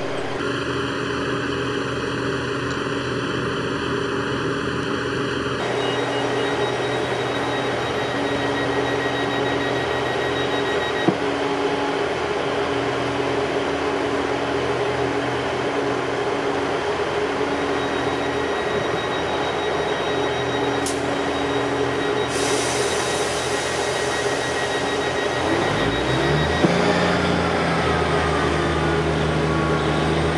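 Class 158 diesel multiple unit standing at a platform with its underfloor diesel engines idling steadily. About four seconds before the end the engines rev up with a rising note as the unit pulls away.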